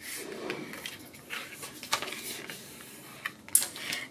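Scored card being folded and creased by hand: soft rubbing and rustling of paper with a few light taps, and a short sharper rustle about three and a half seconds in.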